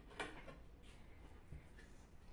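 Near silence with faint handling of a vase built from ceramic strips: one light clack about a fifth of a second in and a fainter one about a second and a half in.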